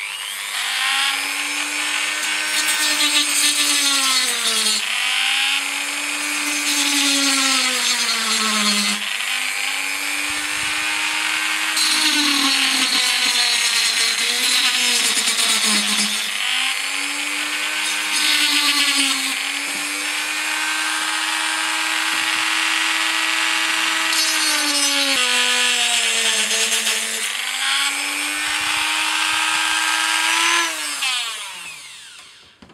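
Dremel rotary tool with a small cut-off disc cutting through the plastic of a model wagon's bolster. The motor whine sags in pitch several times as the disc bites into the plastic and picks up again as it eases off, with a gritty cutting hiss over it. The disc partly melts the plastic as it cuts.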